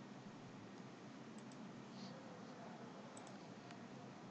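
A few faint computer mouse button clicks over quiet room tone.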